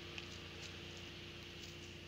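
Quiet steady background hum with a few faint ticks of footsteps on a dirt forest path.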